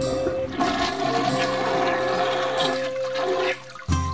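Toilet flush sound effect: a rush of water lasting about three seconds that cuts off shortly before the end.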